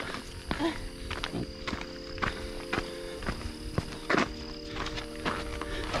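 Scattered clicks and knocks of handling noise as a light is fumbled on in the dark, over a faint steady low hum.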